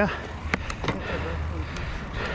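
Bicycle rolling slowly along a paved path: a steady low rumble of tyres and wind on the camera, with a few faint clicks in the first second.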